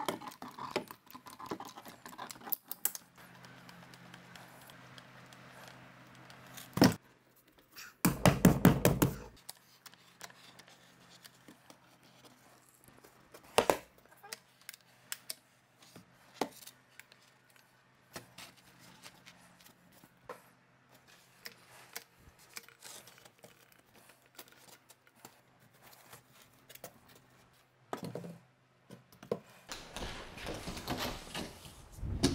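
Hands-on construction work with foam building panels and tools: scattered light clicks and knocks, a sharp knock about seven seconds in, and a rapid clattering run lasting just over a second around eight seconds in, over a faint steady hum.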